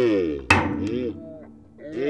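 A single sharp crack about half a second in as steel tooling gives way under the hydraulic press and a chip breaks off. Long, rising and falling "oh" exclamations from two people run around it.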